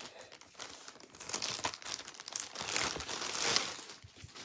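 Packaging being handled and crinkled as it is opened, in irregular rustling bursts that grow louder near the end.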